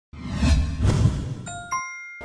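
Logo intro sound effect: a loud rushing whoosh with low swells, ending in a two-note chime whose second note is higher and rings on briefly.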